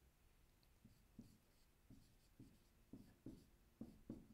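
Dry-erase marker writing on a whiteboard: a run of faint, short strokes, about two a second, starting about a second in.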